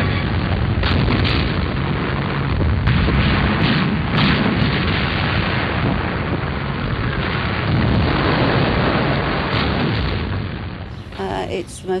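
Wartime battle sounds on an old, dull-sounding soundtrack: a continuous heavy rumble of explosions, with sharp reports of gunfire now and then.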